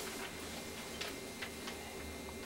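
Quiet room tone with low hum and a few faint, irregular clicks; no piano notes are sounding.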